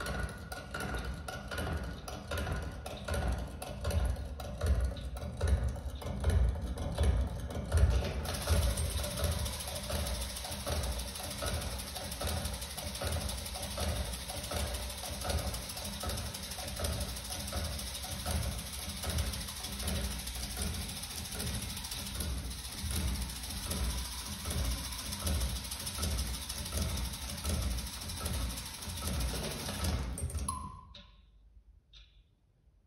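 Experimental percussion on objects: a dense run of repeated low knocks, with a steady hiss coming in about eight seconds in.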